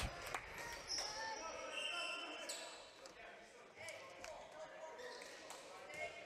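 Quiet, echoing gymnasium background between volleyball rallies: faint distant voices of players and spectators, a few short high shoe squeaks on the hardwood court, and occasional light taps of a ball on the floor.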